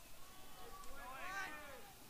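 A high-pitched, drawn-out shout from a person, rising and falling in pitch once, starting about half a second in and trailing off near the end.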